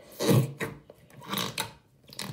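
Blue slime being squeezed and worked in the hands close to the microphone, with two short bursts of squishing and rubbing noise about a second apart.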